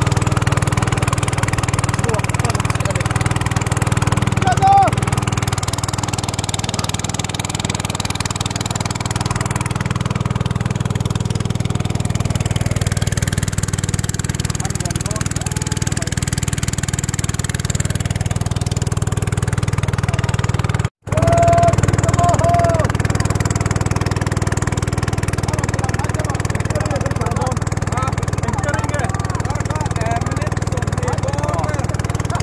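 Outboard motor on a long wooden river boat running steadily under way, a low, even engine hum, with people's voices talking over it. The sound cuts out for an instant about two-thirds of the way through.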